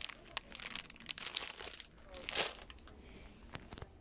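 Irregular crinkling and rustling handling sounds, with a louder rustle about two and a half seconds in.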